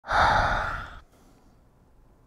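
A man sighing heavily through his hands, which are pressed over his nose and mouth. It is one long exhale of about a second that fades out.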